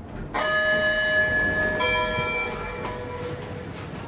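Schindler 3300 AP elevator's arrival chime: two bell-like tones, the second a little lower. The first sounds about a third of a second in and the second about two seconds in, each ringing on for a second or more before fading.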